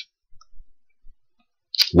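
A near-silent pause in a man's speech, with a few faint low bumps and a short mouth click just before his voice comes back near the end.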